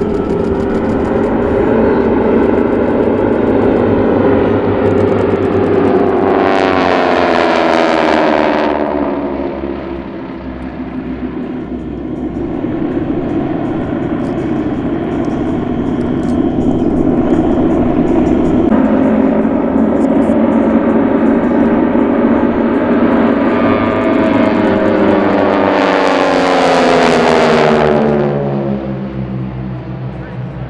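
Four North American T-6 Texans flying in formation, their nine-cylinder Pratt & Whitney R-1340 radial engines and propellers droning with a raspy buzz. The sound swells and its pitch falls as the formation passes, about seven seconds in and again near the end.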